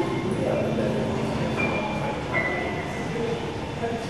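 Background hubbub of a large indoor concourse with distant voices, and a few short, high electronic tones.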